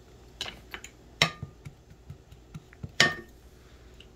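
A cooking utensil knocking against a frying pan: a handful of sharp knocks and clinks, the loudest about a second in and again about three seconds in, each with a brief ring.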